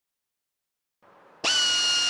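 Near silence, then about one and a half seconds in an electric drill starts up and runs with a steady high-pitched whine.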